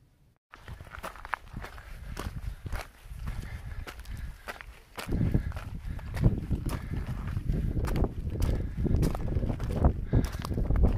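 Footsteps crunching irregularly on a loose gravel and limestone trail, starting about half a second in. About halfway through they get louder and a low rumble joins them.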